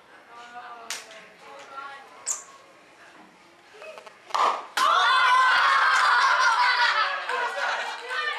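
A plastic film canister holding dry ice and water pops its cap off with a sharp crack about four and a half seconds in, driven by the gas pressure building inside. A crowd of children at once screams and cheers loudly.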